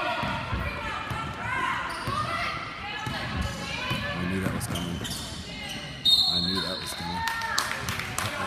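Basketball bouncing on a hardwood gym floor amid spectators' shouting voices. About six seconds in, a sharp, steady, high referee's whistle blows.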